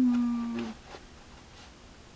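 A woman's drawn-out thinking "hmm", one held hum lasting under a second and sliding slightly down in pitch.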